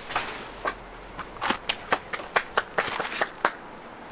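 One person clapping hands: a run of about a dozen sharp claps, roughly four a second, starting about a second in and stopping shortly before the end.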